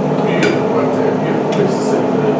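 Scallops sizzling on a hot salt block while metal tongs scrape and clink against the block as they are lifted off, with two short scrapes, one about half a second in and one near the end, over a steady hum.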